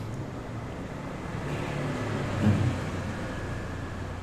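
A pause in a lecture: steady low hum and background noise of the room. A brief faint voice-like sound comes about two and a half seconds in.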